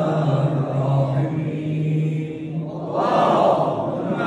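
Men's voices chanting an Islamic supplication (dua), drawn out with long held low notes. A louder, brighter phrase begins about three seconds in.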